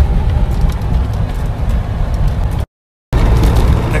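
Trabant driving at motorway speed, heard from inside the cabin: a steady, loud low rumble of engine and road noise. The sound cuts out abruptly for about half a second, about two and a half seconds in, then the same rumble resumes.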